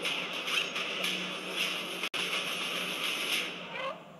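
A cat yowling and screeching over a dense, noisy rush of sound. The sound drops out for an instant about two seconds in.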